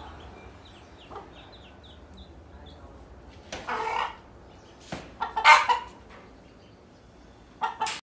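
Chicks peeping in a quick run of short, high notes over the first few seconds, then a domestic hen clucking loudly in three bursts, the middle one the loudest. A single sharp click comes just before the second burst.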